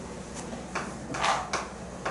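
Chalk writing on a chalkboard: a few short scratches and taps as letters are drawn, the longest and loudest stroke about a second and a quarter in.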